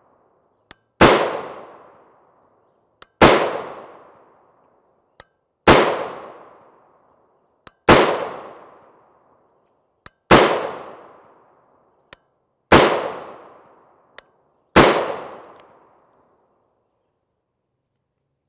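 Seven rifle shots from a 10.5-inch-barrel AR-15 with a three-port muzzle brake, firing .223 Remington 55-grain FMJ, a little over two seconds apart. Each is a sharp crack with an echo dying away over about a second and a half, and a faint click comes shortly before each shot.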